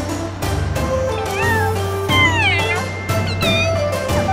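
Cat meows, three of them, the loudest about two seconds in and sliding down in pitch, played as sound effects over upbeat background music with a steady beat.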